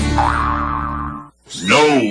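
A radio-ad sound effect: a held, springy boing over steady low tones, cut off sharply a little over a second in. After a short gap, a loud cat meow starts near the end.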